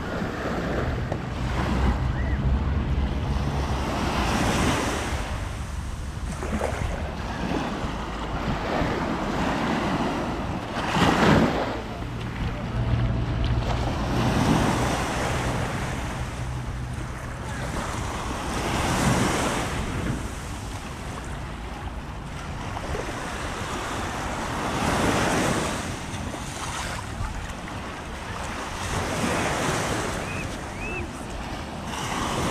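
Small waves breaking and washing up a sandy beach, the surf swelling every few seconds, with wind rumbling on the microphone at times.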